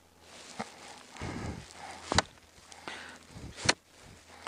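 Footsteps crunching in snow on lake ice, with three sharp knocks, the loudest about two seconds in.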